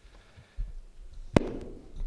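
Handling noise from a handheld microphone as it is lowered and passed on: a low rumble with one sharp knock about one and a half seconds in.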